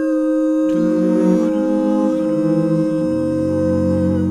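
Wordless vocal-group harmony: voices hum sustained chords that move in steps. Lower notes join about a second in and again near the end.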